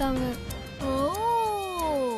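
Background score of a TV drama: a short sliding note at the start, then one long note that rises in pitch and glides slowly down over about a second and a half.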